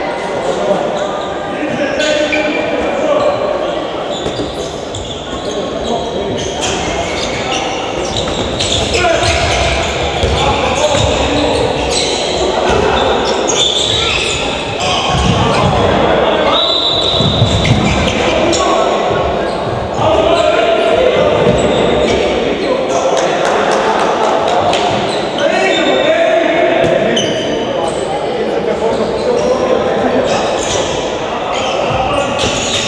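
Handball game in an echoing indoor sports hall: the ball bouncing on the wooden court amid repeated short impacts, with indistinct voices of players and spectators.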